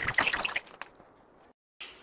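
Close rustling and light clicking handling noise that fades out about halfway through, followed by a brief moment of dead silence.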